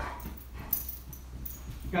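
Black Labrador moving about on a leash, with a sharp click about two-thirds of a second in and faint, brief high jingles of its collar and leash hardware.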